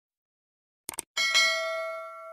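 A quick double mouse-click sound effect about a second in, then at once a bright bell chime that rings on with several clear tones and fades away: the click and notification-bell sound effects of an animated subscribe button.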